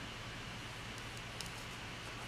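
Fingertips pressing a vinyl decal onto a journal's paper cover: faint handling with a couple of small ticks over a steady low room hum.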